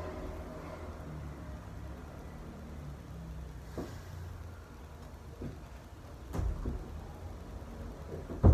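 A low steady hum in the room, with a few soft thumps of bare feet stepping on a wooden floor. The heaviest thump comes a little past the middle.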